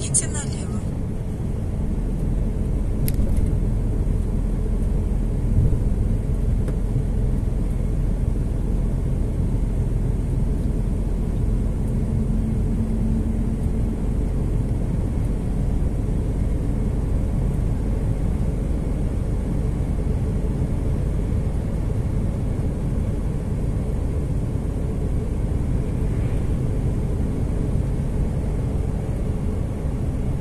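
Steady low engine and road rumble heard inside a truck cab on the move.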